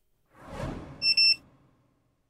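An edited-in sound effect: a swelling whoosh, with a short high electronic beep about a second in.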